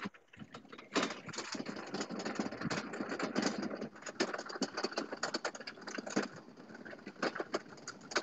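Close handling noise on a phone microphone: clothing and a fabric bandana rustling and scraping against it in a dense, irregular crackle. The crackle starts about a second in and eases off near the end.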